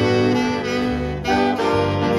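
Jazz big band playing: the saxophone section and brass hold full sustained chords over a moving bass line, with a new chord attack about a second in.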